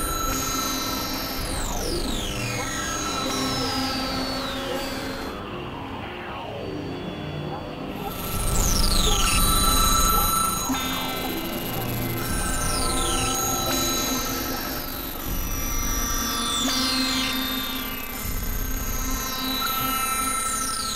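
Experimental synthesizer music from a Novation Supernova II and a Korg microKORG XL: held droning tones with repeated falling pitch sweeps. About eight to ten seconds in, a low swell comes in and is the loudest part.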